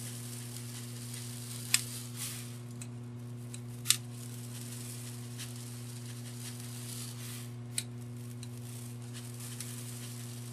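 Fine craft sand trickling from a plastic bag onto a rock-covered candle, a faint hiss broken by three sharp ticks, over a steady electrical hum.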